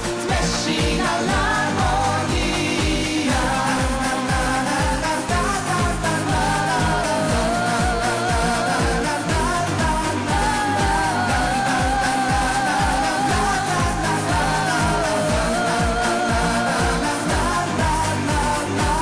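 A woman singing a pop song into a microphone over amplified music with a steady beat.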